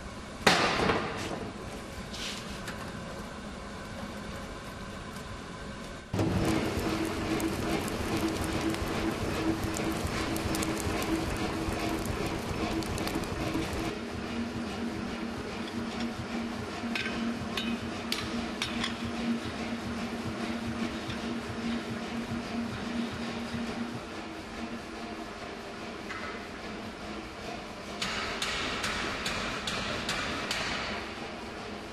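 Blacksmith's forge sounds: a sharp metallic clang about half a second in and a lighter ring about two seconds later. From about six seconds the forge fire and its blower run steadily with a low hum, broken by a few light metal clinks.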